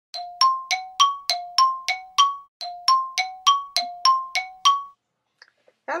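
Intro jingle of bell-like chime tones: two phrases of eight struck notes, about three a second, alternating between a lower and a higher pitch, each ringing briefly. It stops about five seconds in.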